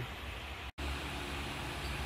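12-inch shutter exhaust fan running steadily, a low hum under an even rush of air, cutting in abruptly about three quarters of a second in. Before that there is only faint room noise.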